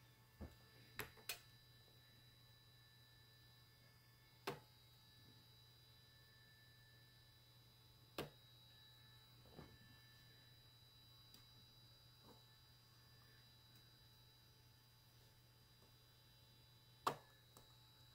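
Malectrics Arduino spot welder firing weld pulses through handheld probes into nickel strip on cylindrical battery cells: a few short, sharp snaps spaced irregularly, several seconds apart, over near silence with a faint low hum.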